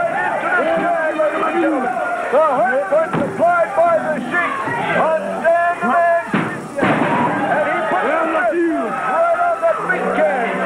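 Studio crowd yelling and screaming all at once, many voices overlapping, with a loud bang about three seconds in and another about six seconds in.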